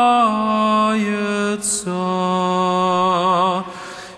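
A single male voice singing slow Orthodox penitential chant, drawing out the last syllables of a phrase in long held notes that step downward. There is a short hiss of a consonant about halfway through, and a final note wavers before fading out shortly before the end.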